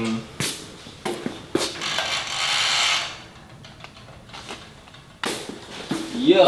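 Footsteps on a concrete floor in an empty metal-walled storage unit: a few sharp clicks in the first two seconds, a brief scuffing rustle, then quiet until a single sharp knock near the end.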